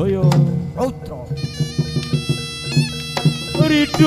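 Live Javanese barong-dance ensemble music: drum strokes over low steady tones, with a reedy wind instrument coming in about a second and a half in on high held notes.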